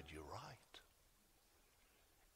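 A man's voice speaking two words, then near silence: room tone with one faint tick.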